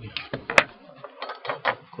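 Small metal hand tools clicking against each other and a hard surface as they are handled: one sharp click about half a second in, then a quick run of clicks near the end.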